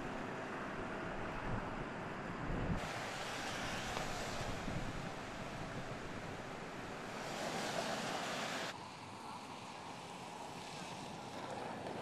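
Steady outdoor city noise, a rush of traffic and wind with no clear single event. The noise changes abruptly about three seconds in and again near nine seconds, growing quieter after the second change.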